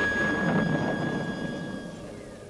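Eerie film score: one high flute note held steady, with a rushing noise that swells about half a second in and dies away beneath it.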